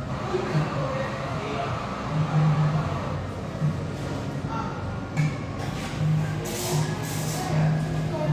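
Background music with a low, recurring bass note under faint, indistinct voices, with two brief hissing noises late on.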